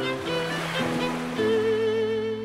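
Background music of held, slowly changing notes. About halfway through, a higher sustained note with a slight vibrato comes in.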